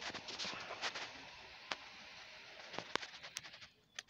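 Faint swishing of water and sediment in a plastic gold pan, with a few sharp clicks scattered through it.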